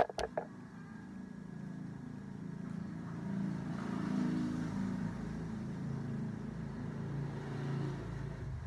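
A few sharp clicks right at the start, then a motor vehicle engine running steadily. It grows louder to its loudest around four seconds in and stays near that level.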